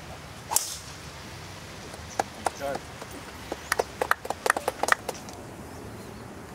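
A golf club striking the ball off the tee with one sharp crack about half a second in. A brief voice follows, then a scatter of quick sharp clicks.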